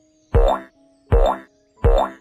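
Three cartoon 'boing' sound effects, about three-quarters of a second apart, each a sudden thump with a quick rising twang, one for each quiz answer button popping up, over soft background music.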